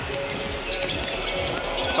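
A basketball being dribbled on a hardwood court, a run of repeated low thuds, over the steady noise of an arena crowd.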